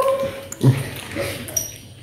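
High-pitched laughing vocal sounds from a young man. They are loudest at the start and again in a short burst about half a second in, then fade away.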